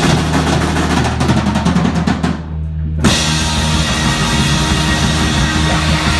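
Live rock band with electric guitars, bass and drum kit playing loud: a held low bass note under a fast run of drum and cymbal hits, a short drop a little after two seconds in, then the full band crashing back in about three seconds in.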